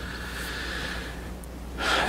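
A man drawing an audible breath through the mouth, lasting about a second and a half, over a steady low hum.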